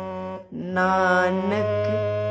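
Harmonium playing held notes of a kirtan melody, with a sung line held over it. The sound breaks off briefly about half a second in, then new notes come in and hold steady.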